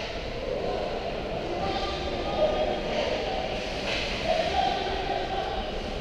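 Indoor ice rink ambience: a steady, echoing rumble with faint, distant voices of players calling out at the far end of the ice.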